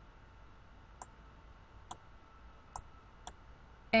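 Four separate computer mouse-button clicks in about two and a half seconds, over a faint steady background hum.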